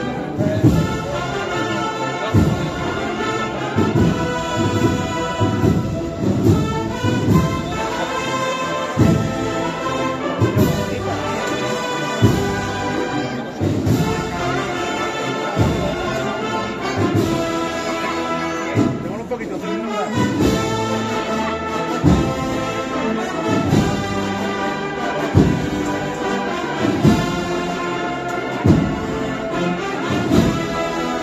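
Agrupación musical, a processional band of cornets, trumpets and drums, playing a marcha procesional, with sustained brass chords over a steady bass drum beat.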